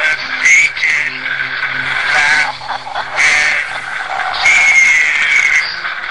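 A woman's voice wailing and screeching in high, strained bursts, meant to sound like tormented souls screaming in hell, over a low steady musical drone.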